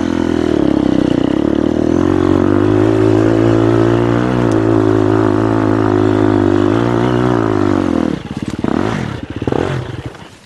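Enduro dirt bike engine pulling under load up a trail, its pitch rising and dipping with the throttle. About eight seconds in it drops off, gives a few short ragged bursts, and dies away near the end.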